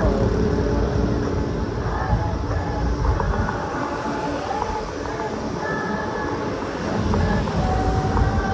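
Wind and road rumble on a camera riding a bicycle through city traffic, a steady low roar with faint passing tones above it.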